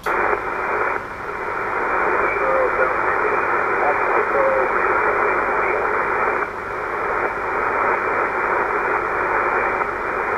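Icom IC-7200 transceiver's receiver on 20-metre SSB, a loud steady rush of band noise and static that switches on sharply as the transmit key is released. Faint, garbled voices of weak stations answering the call are buried in the noise, too weak to copy.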